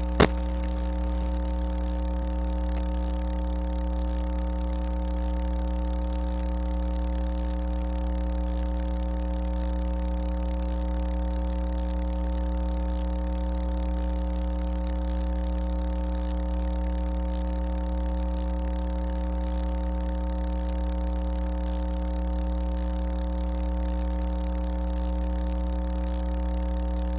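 Steady electrical hum on an otherwise empty broadcast audio feed: a low drone with a buzz of higher overtones, unchanging in pitch and level.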